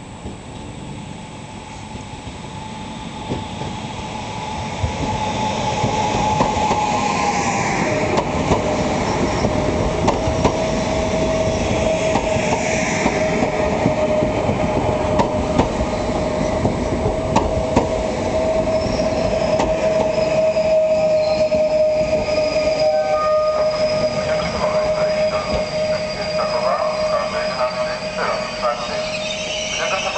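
Pesa Elf electric multiple unit arriving along the platform. Its noise builds over the first several seconds. A steady whine drops a little in pitch about eight seconds in and holds until near the end, over a run of clicks from the wheels on the rails.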